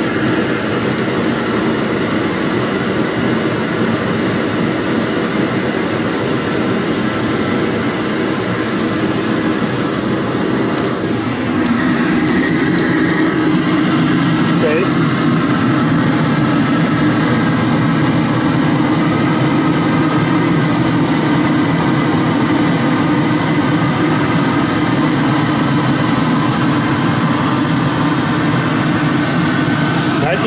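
Hair dryer blowing air into a homemade oil burner, a steady whirring roar with the burner running. It gets louder and fuller about twelve seconds in.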